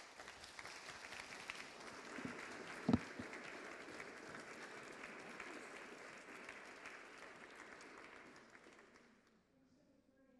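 Audience applauding at the end of a talk, with a single thump about three seconds in; the applause dies away near the end.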